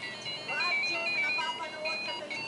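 A simple, high electronic jingle of short notes stepping up and down, with a soft voice underneath.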